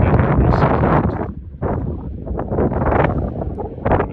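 Wind buffeting a phone's microphone in loud gusts, easing briefly about a second and a half in before gusting again.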